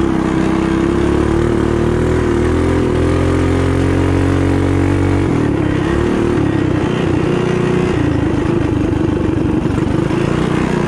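Built mini bike's engine racing under hard throttle. Its pitch climbs a little over the first few seconds, then drops about halfway and the note turns rougher and choppier.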